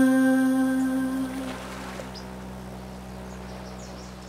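The song's final held note fades out over about a second and a half, leaving a low steady hum with a few faint high chirps above it.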